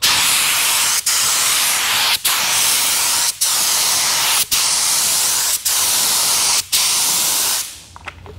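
SATA Jet 100 B RP gravity-feed spray gun spraying water in a run of back-and-forth passes: a loud, steady air hiss that cuts out briefly about once a second between passes, then stops just before the end.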